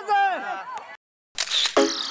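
A person's voice for about the first second, cut off abruptly into a brief silence; then a short burst of hiss and the start of electronic music with a falling sweep and a beat about three times a second.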